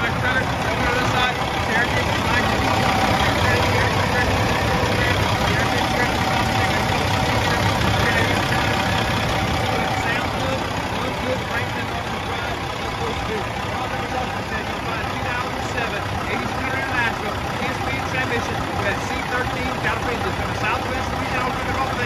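Caterpillar C13 inline-six diesel of a 2007 International 8600 truck idling steadily, with indistinct talk in the background.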